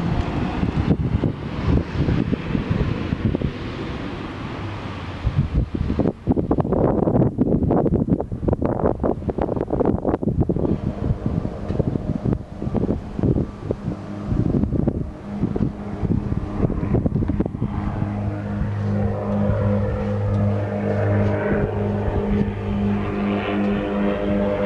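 2006 Dodge Ram 1500 pickup's engine idling, with wind buffeting and handling noise on the microphone for most of the first three quarters; in the last part the idle comes through as a steady, even low hum.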